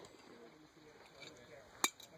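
A single short, sharp metallic click near the end, against quiet range background.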